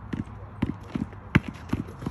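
A basketball being dribbled on an asphalt court: steady bounces, about two and a half a second, with one louder bounce about one and a half seconds in.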